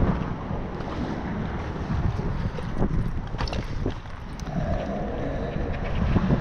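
Wind buffeting a GoPro's microphone, a steady low rumble, with a few faint clicks from the camera being handled.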